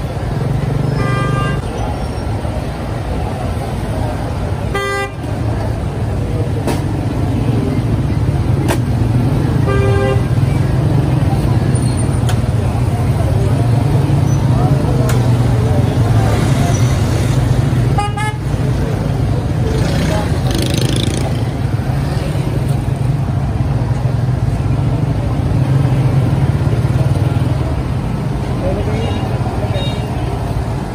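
Busy street-market traffic: a steady low rumble of passing vehicles and background voices, with short vehicle-horn beeps about a second in, near five seconds, near ten seconds and near eighteen seconds.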